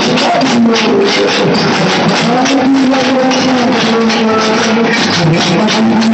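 A troupe of large double-headed drums beaten with sticks in a dense, driving rhythm, with a held, wavering melody line over it.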